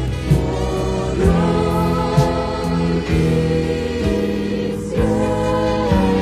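Spanish-language Christian worship music: a choir singing long held notes over a band, with a drum hit about once a second.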